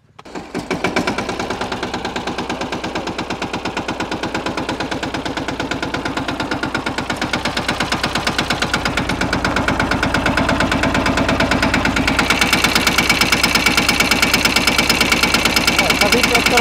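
Mahindra Yuvraj 215 NXT mini tractor's single-cylinder diesel engine starting about half a second in, then running with an even, rapid chugging beat that grows gradually louder and picks up further about twelve seconds in.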